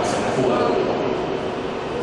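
Indistinct speech echoing through a large hall over the steady murmur of a seated congregation.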